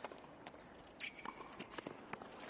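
Tennis rally on a hard court, heard faintly: a string of sharp racquet hits and ball bounces, with a brief shoe squeak about a second in as a player runs forward.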